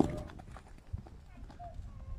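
A pony's hooves stepping on the sand of an arena: scattered soft thuds and clicks, the heaviest about a second in.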